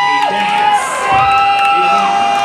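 Nightclub audience cheering and screaming, with several long, high-pitched shrieks held and overlapping.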